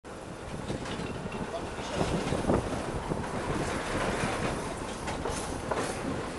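Tram running along the rails, a steady rumble of wheels on track with a few sharp clicks and knocks from the rail joints and points.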